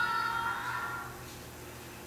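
Young children's voices singing a held, chanted line from a classroom video played back over speakers. The line ends about a second in, and then only the room's steady hum is left.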